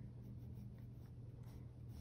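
Faint scratching of a mechanical pencil on sketchbook paper as lines are drawn, over a steady low hum.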